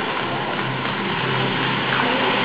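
Ground fountain firework hissing steadily as it sprays sparks.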